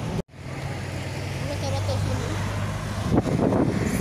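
Street ambience with a steady low engine hum from traffic and faint voices. The audio cuts out for an instant at an edit just after the start, and a short burst of wind or handling noise hits the microphone near the end.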